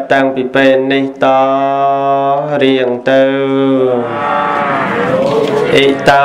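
A Khmer Buddhist monk's voice chanting in the sung, intoned style of a Cambodian dharma sermon. Short syllables give way to long held notes, and near the end the pitch dips and rises again.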